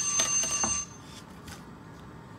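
A timer alarm ringing with steady high tones, cut off suddenly just under a second in, with a few light clicks and taps. Then only quiet room sound remains.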